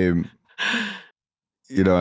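A short breathy sigh, one exhale of about half a second, in a pause between spoken words.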